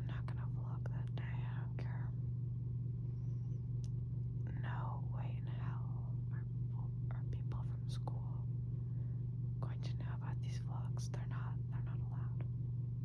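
A young woman whispering, a few short phrases with pauses between them, over a steady low hum.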